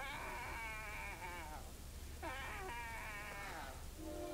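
A cartoon character's voice crying in long wails that fall in pitch, about three in a row with a short break before the last two.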